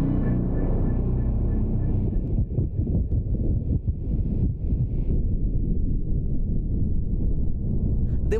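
Helicopter engine and rotor noise: a loud, steady low rumble.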